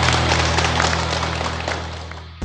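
A small group of people clapping over background music with a steady low bass line, both fading out near the end.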